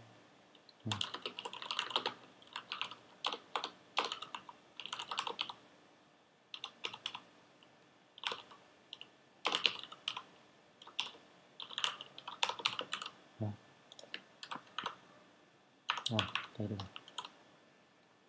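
Typing on a computer keyboard: runs of quick keystrokes with short pauses between them.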